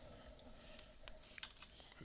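Near silence with a few faint computer keyboard clicks about one and a half seconds in.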